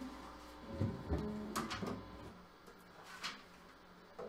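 Handling noise of a sunburst acoustic guitar being taken off and set into a floor stand: a few soft knocks about a second in, then scattered light clicks.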